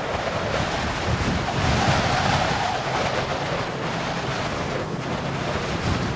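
A steady, wind-like rushing noise with a pulsing low rumble underneath, like a storm; it swells about two seconds in and surges again near the end.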